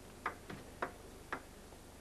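A table tennis ball ticking sharply four times as it is struck and bounces on bat and table, at uneven intervals of about a quarter to half a second.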